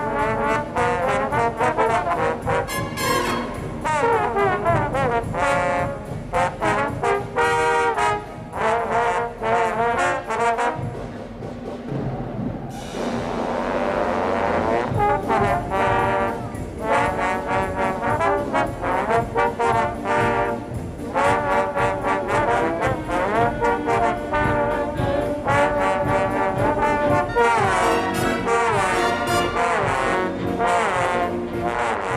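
A trio of trombones playing a featured piece over concert band accompaniment, the notes joined by sliding slide glissandos. A long rising glissando comes about halfway through.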